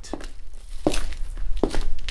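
Footsteps in a stairwell: a few separate footfalls, about a second in and again near the end, over a low steady hum.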